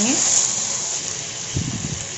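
Okra, potato, onion and freshly added tomato frying in oil in an aluminium kadhai on a high gas flame, sizzling steadily as they are stirred with a wooden spatula. A brief low bump about a second and a half in.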